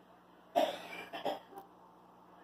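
A person coughing close to the microphone: a sharp first cough about half a second in, the loudest, then a shorter second cough a little after a second.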